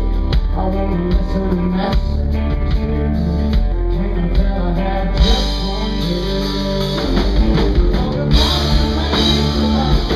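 Live Southern rock band playing loudly: electric guitars, bass and drums behind a male lead vocal. The sound grows brighter and fuller about five seconds in.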